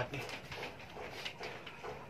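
A man's voice: the end of a short exclaimed word about the heat, then faint breathy vocal noises and rustling as he drops back onto the bed.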